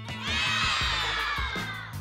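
A hall full of young children shouting together, a high, dense chorus of many voices that swells up about a quarter-second in and trails off near the end, over background music.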